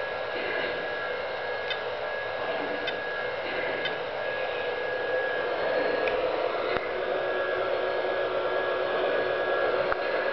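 Lionel electric model trains running on their track: a steady motor whine and the rumble of wheels on the rails, with a few faint clicks, growing a little louder in the second half.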